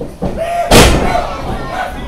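A wrestler's body slamming onto a wrestling ring's mat, one loud bang about three quarters of a second in that echoes through the hall. Voices shout around it.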